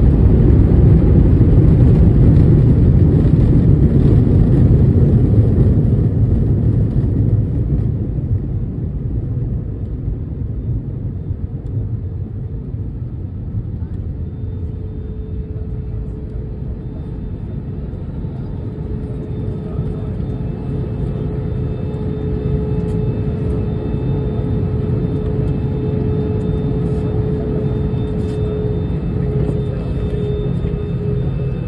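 Jet engines of an Airbus A320-family airliner heard from inside the cabin during the landing rollout and taxi: a loud rumble that eases after about six seconds as the plane slows, then a steady engine whine that grows from about halfway through.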